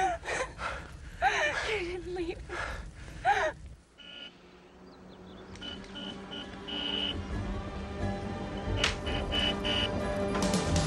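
Pained, wordless vocal sounds, moans and whimpers, for the first few seconds. After a short lull, soft orchestral film-score music swells in, with a held chord and a short high note repeated several times.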